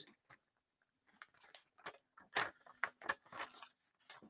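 Faint crinkling and rustling of paper as a coloured card is slid into a folded sheet of translucent paper. Scattered soft crackles start about a second in and run on until near the end.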